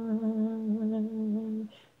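Isolated a cappella singing voice with no instruments, holding one long steady note that ends about one and a half seconds in, followed by a short silence.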